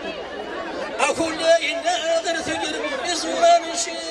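Men's voices reciting Amazigh poetry through microphones and loudspeakers, with chatter and a steady held tone that comes and goes underneath.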